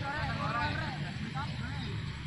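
Distant shouts and calls from several players across the pitch, overlapping, strongest in the first second and fading after, over a steady low rumble.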